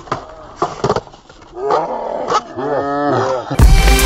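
A skateboard clacks sharply on concrete a few times, followed by loud, drawn-out excited shouting from the skaters. Music cuts in just before the end.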